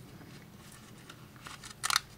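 Faint rustle of yarn being handled while a knot is tied around a tassel, with a short scratchy rasp near the end as the strand is pulled tight.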